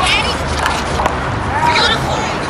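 People's voices talking outdoors, with a few short sharp knocks and brief high squeaky sounds.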